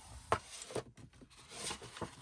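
Patterned paper being folded and tucked by hand on a scoring board: rustling and crinkling broken by several short, sharp paper crackles.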